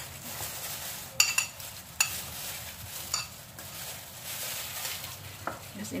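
Mashed banana scraped by a plastic-gloved hand out of a china bowl into a stainless steel mixing bowl of grated taro: soft scraping and rustling, with a few sharp clinks of the bowls knocking together.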